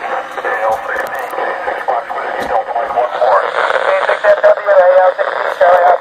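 Amateur radio operators' voices relayed through the AO-91 FM satellite and heard from a 2-metre radio's speaker. They come through loud, with a narrow, tinny tone over a bed of hiss, with a few clicks.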